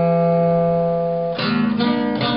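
A plucked string instrument, guitar-like, playing: a chord rings on steadily, then new notes are struck about one and a half seconds in.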